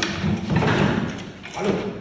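Indistinct voices with shuffling and movement noise, no clear words.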